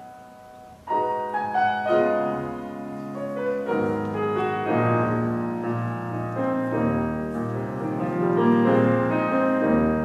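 Solo Steinway & Sons concert grand piano playing classical music. The notes start about a second in and grow fuller and louder toward the end.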